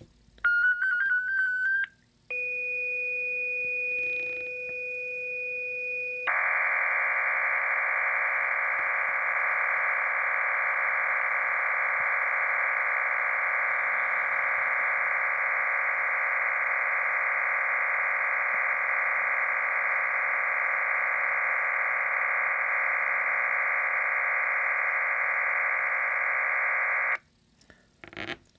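FLDigi sending an MT63-2K digital-mode message through a laptop's speakers. After a brief wavering tone, two steady tones at the low and high edges of the band sound for about four seconds. Then a dense, even chord of many tones fills the band for about twenty seconds and cuts off sharply.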